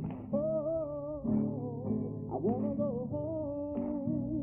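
Music: a solo voice singing a slow, wavering melody over guitar and bass accompaniment.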